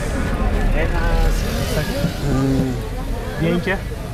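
Men's voices talking over a steady low rumble of road traffic.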